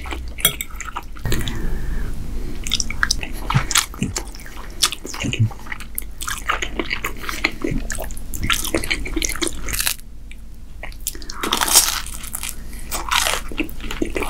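Close-miked chewing and mouth sounds of a person eating ribbon pasta in meat sauce, with many short sharp smacks and clicks, a quieter pause about ten seconds in, then a louder stretch of chewing.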